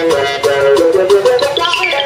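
Live band playing an instrumental passage on electric guitar, bass, drums and keyboards. A busy melody moves in quick short notes over a steady drum beat, with a fast falling run near the end.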